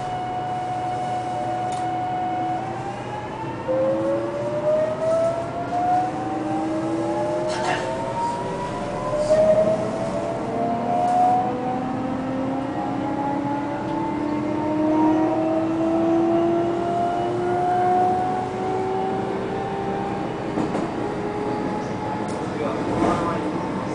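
JR Kyushu 813 series electric train's inverter-driven traction motors as it pulls away. A steady whine begins rising in pitch after a couple of seconds, with several tones climbing together in stages as the train gathers speed, and there is a brief click about eight seconds in.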